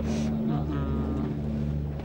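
A motor engine running steadily nearby, a low even drone under short snatches of speech.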